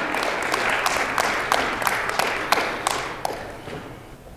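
Congregation applauding, a spread of many hand claps that thins out and dies away near the end.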